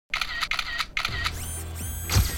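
Three camera shutter clicks in quick succession. About a second in, a low music drone starts, with rising whooshes over it.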